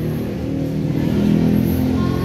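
A motor vehicle's engine running, a low steady hum that swells a little about a second and a half in.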